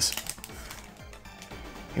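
Foil booster-pack wrapper crinkling as it is pulled open by hand, in the first half second, then faint background music.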